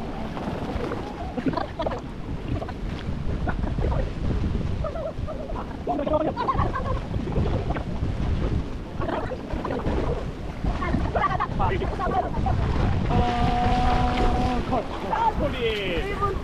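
Swimmers splashing through pool water during a swimming race, with wind rumbling on the microphone and scattered shouts. About thirteen seconds in, one long, steady-pitched call is held for about two seconds.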